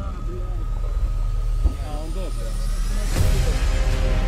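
Men's voices talking low over a steady low rumble on a body-worn camera's microphone. About three seconds in comes a sudden loud burst of noise, with background music underneath it.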